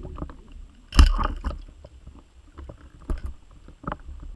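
Muffled knocks and bumps heard through an underwater camera, over a low rumble of moving water. The loudest knock comes about a second in, followed by a few sharper clicks near the end.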